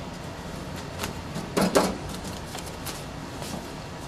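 A stack of paper envelopes being set into a printer's feeder and pushed against its back guide: a few short rustles and knocks, the loudest two close together about a second and a half in, over a steady low hum.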